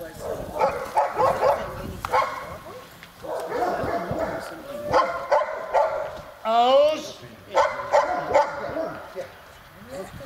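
German shepherd dog barking in several quick runs, with one longer drawn-out yelp about two-thirds of the way through.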